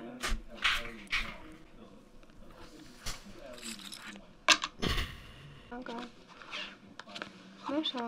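Quiet, low speech in short stretches with a few brief hissy noises, and a single sharp knock about four and a half seconds in that is the loudest sound.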